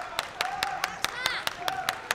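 Arena spectators clapping in a steady rhythm, about five claps a second, with short voices calling out between the claps.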